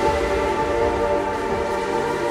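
Minimal techno played in a DJ mix: a held chord of several steady tones sounds over a kick drum.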